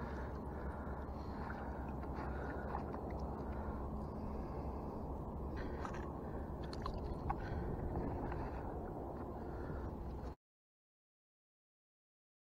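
Close handling noise as a small spotted sea trout is held and unhooked beside the boat: wet squishing, small splashes and scrapes over a steady low rumble, with a few sharp clicks in the middle. About ten seconds in the sound cuts off to dead silence.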